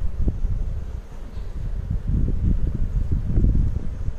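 Wind buffeting the microphone: a low, gusty rumble that swells and eases, loudest about two to three and a half seconds in.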